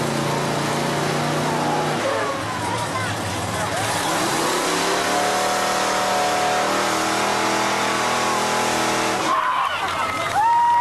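A fire truck's engine running steadily, its pitch dropping about two seconds in and settling again a few seconds later, with voices shouting over it.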